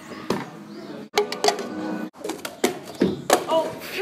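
Plastic cups knocked and set down on a wooden picnic table: scattered sharp taps at uneven spacing, with low voices between them.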